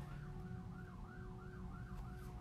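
A faint siren in a fast yelp, its pitch rising and falling about four times a second.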